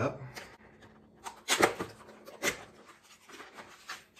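Cardboard BinaxNOW test-kit box opened by hand: a few short scraping, rustling sounds of the flap and paperboard inner packaging being pulled out, the loudest about a second and a half in.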